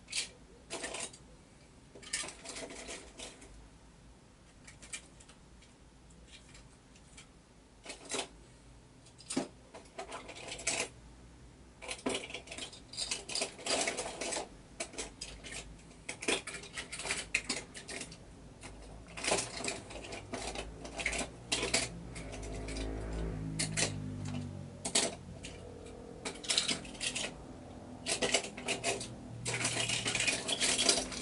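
Small hard objects clinking and clattering in irregular bursts: die-cast toy cars being rummaged through and gathered, with a low drawn-out sound about two-thirds of the way in.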